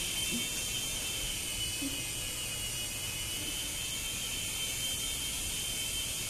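A small battery-powered toy airplane's electric motor and propeller running steadily: a constant whir with a high whine.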